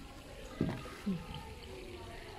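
Running water trickling steadily at a low level, with two brief low voice sounds about half a second and a second in.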